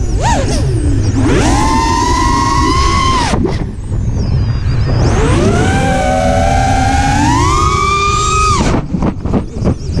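FPV racing quadcopter's brushless motors and propellers whining over a steady rumble of wind and frame vibration, the pitch climbing and falling with the throttle in two long pushes. Near the end the whine breaks into short choppy bursts.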